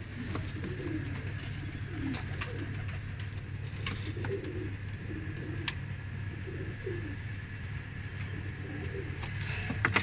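Domestic pigeons cooing over and over, over a steady low hum, with a few faint clicks.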